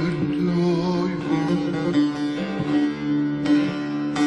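Turkish folk music instrumental passage led by a bağlama (long-necked saz), with a wavering melody over a steady low drone.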